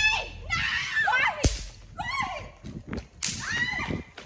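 Girls shrieking and laughing in high voices that rise and fall, with one sharp smack about one and a half seconds in.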